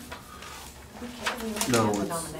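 Quiet voices murmuring in a meeting room, with a low hummed or half-spoken sound rising in pitch near the end.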